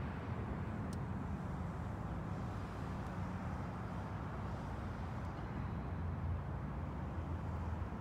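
Steady low rumble of road traffic and idling vehicles, with no distinct events standing out.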